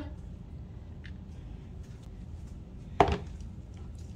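A green plastic sieve with wire mesh handled over a worm bin, with faint rustling of dry, clumpy worm-bin material tipped off it. About three seconds in there is a single sharp knock as the sieve strikes the bin.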